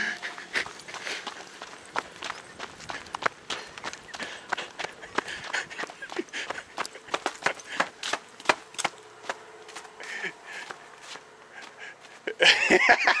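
Footsteps of a person walking across a packed dirt yard, a long run of irregular steps.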